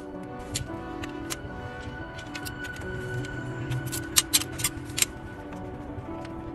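Background music, with sharp clicks from hand work on the alternator cover, the loudest in a quick cluster about four to five seconds in.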